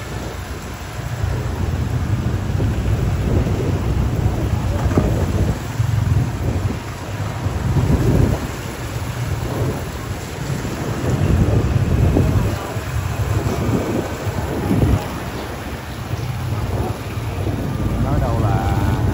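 Wind buffeting the microphone of a rider on a moving motorbike: a loud low rumble that swells and drops in gusts every couple of seconds, with motorbike engines running underneath.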